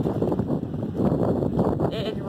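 Heavy rain on the thick tarp cover of a steel-tube hoop barn, a dense steady rush, with wind on the microphone.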